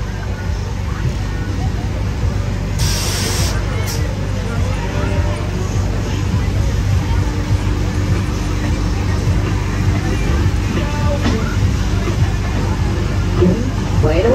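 Fairground jump ride running at full height, a steady deep rumble under voices and crowd babble. A short, loud burst of hiss comes about three seconds in.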